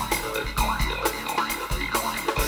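Live instrumental music: a synthesizer lead with repeated swooping pitch glides over a drum kit, with regular low drum hits.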